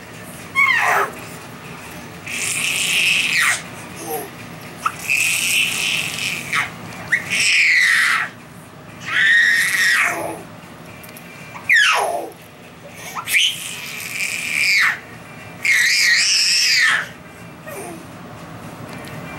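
A baby's high-pitched squeals of delight, about ten of them with short pauses between, several sweeping sharply down in pitch.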